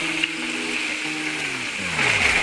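Chicken tenders sizzling in the hot oil of a two-basket electric deep fryer during their second fry, a steady hissing. Under it, a background music chord holds, then slides down in pitch near the end.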